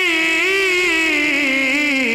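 A man's voice singing a naat, holding one long drawn-out note that wavers and slides slowly down in pitch.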